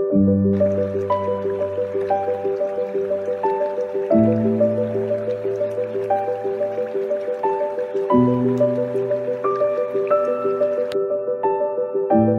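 Soft solo piano music with a deep bass note that changes about every four seconds, over the rushing of a shallow creek flowing over rocks that comes in about half a second in and cuts off suddenly near the end.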